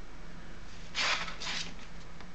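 Two brief rustles of a strip of oak tag paper and a steel ruler being slid across a cutting mat, about a second in, over a faint steady room hum.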